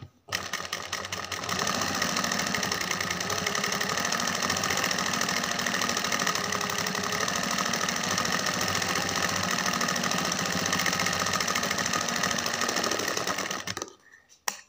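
Sewing machine stitching continuously at a steady fast pace, running a decorative line of stitches on the fabric; it starts after a short pause right at the beginning and stops abruptly just before the end.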